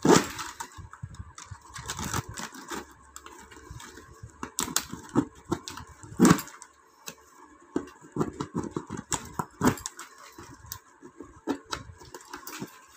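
Stiff plastic weaving tape crackling and rustling in short, irregular crackles as its strands are bent and tucked into the woven edge of a tray.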